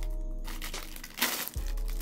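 Two sustained low musical notes, the first held about a second, the second starting just after a short sharp crackle of a plastic sleeve being cut open with a knife about a second in.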